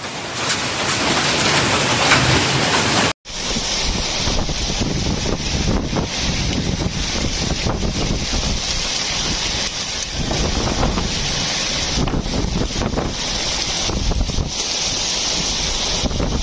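Heavy rain pouring steadily. About three seconds in it cuts abruptly to a strong windstorm with driving rain, the gusts buffeting the microphone in a rumble that rises and falls.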